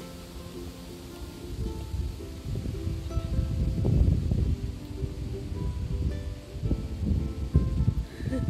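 Gentle background music with short sustained notes, over gusts of wind buffeting the microphone that grow stronger from about two and a half seconds in.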